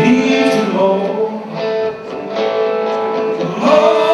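Live band playing a song: electric and acoustic guitars strumming over drums, with a voice singing.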